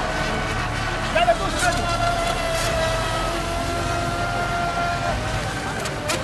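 Brushless electric RC race boat running at speed, its motor giving a steady high whine that holds one pitch and stops about five seconds in.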